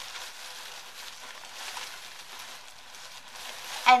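Steady rustling of cloth as a piece of baby clothing is handled and folded.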